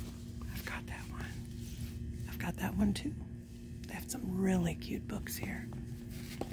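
A soft, whispered voice, heard twice: about two and a half seconds in and again around four to five seconds. A steady low hum runs underneath, with light taps as books on a shelf are handled.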